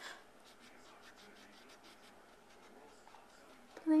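Faint scratching of a felt-tip marker on a paper coloring page, in short repeated strokes.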